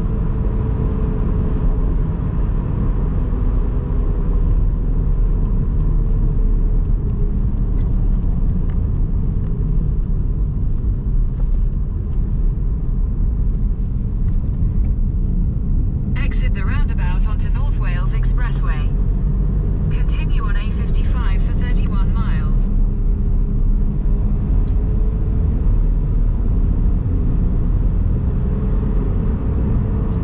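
Steady road and engine rumble inside a moving car's cabin, with a faint tyre whine at the start and end. Just past halfway come two short spells of a voice-like sound, each a few seconds long.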